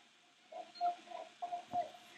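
Several short, distant shouts in quick succession, echoing in a large arena hall, with a single knock near the end.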